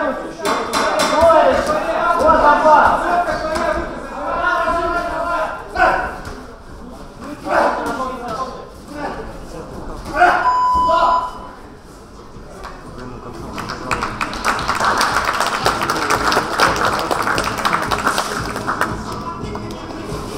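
Shouted instructions from the boxer's corner in the first few seconds. A brief ringing bell about ten seconds in marks the end of the final round. From about fourteen seconds in, spectators applaud.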